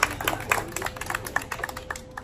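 Small audience applauding, the clapping thinning to scattered hand claps and fading out.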